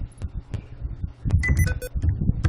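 A few scattered computer keyboard keystrokes as a word is typed, with a brief ringing tone near the end.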